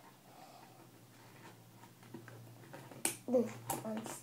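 Quiet room, then two sharp clicks in quick succession near the end, from small objects being handled, with a girl's brief hummed 'mm' between them.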